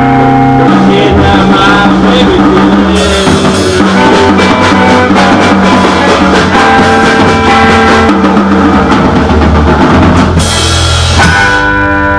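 A rock band playing live in a small room: drum kit, electric guitar and bass guitar in a loud instrumental passage, with no singing.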